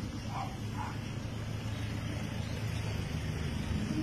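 A motor vehicle's engine running steadily nearby, a low even rumble, with faint street noise.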